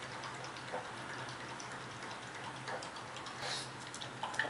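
A few faint clicks of plastic magnetic letters being handled against a refrigerator door, over a steady low hum.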